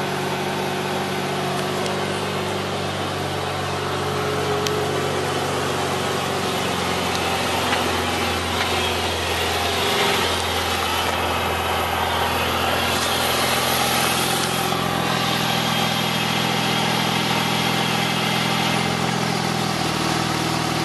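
Porsche 911 Turbo's flat-six engine idling steadily.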